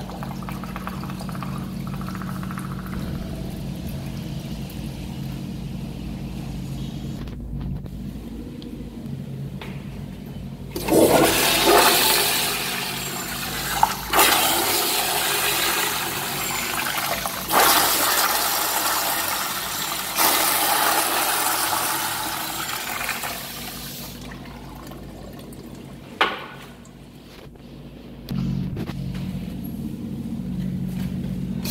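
American Standard commercial toilet flushing through its chrome flush valve. The loud rush of water starts suddenly about a third of the way in, surges several times and runs for over ten seconds before tapering off.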